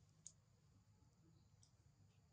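Near silence: faint low background hum with a single sharp click about a quarter second in and a fainter tick later.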